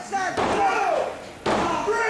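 Shouting voices with a sharp thud about one and a half seconds in, from a wrestler's strike landing in the ring corner.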